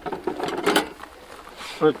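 A few light metallic clicks and a rattle as a spring-loaded kill trap inside a wooden box trap is worked and set, under low murmured talk.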